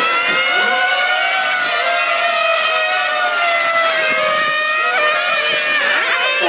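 Several 1/8-scale nitro on-road RC cars' small two-stroke glow engines running at high revs together, a layered high whine that rises and falls as they are throttled through the corners. About five seconds in, one engine's pitch drops sharply as it comes off the throttle.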